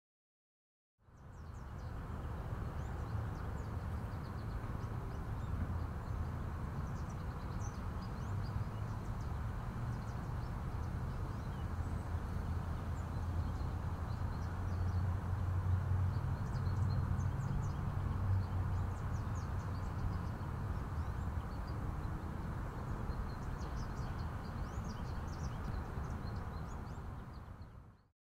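Outdoor field ambience: wind rumbling on the microphone, with faint bird chirps scattered through. It fades in about a second in and stops at the end.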